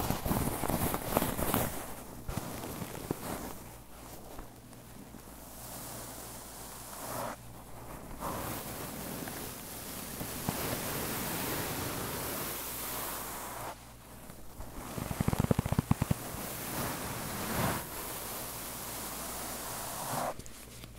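Sewn fabric travel pouch for crystals being crumpled and rubbed close to the microphone as an ASMR sound, giving soft rustling swishes that swell and fade. A run of sharper crackles comes about fifteen seconds in.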